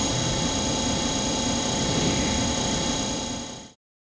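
A drill running at full speed: a steady high whine over a rushing noise, fading out about three and a half seconds in.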